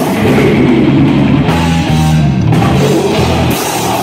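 Live heavy metal band playing loudly: distorted electric guitars and bass over a drum kit. Midway the cymbals drop out while the guitars hold low notes, and the drums come back in near the end.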